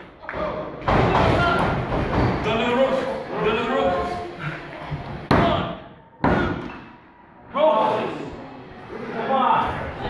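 Sharp thuds on a wrestling ring's canvas, including a referee's hand slapping the mat twice about a second apart as he counts a pinfall that is broken before three. Voices shout between the impacts.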